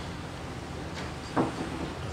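Steady background noise of an outdoor race broadcast, with a man's voice briefly saying one word about halfway through.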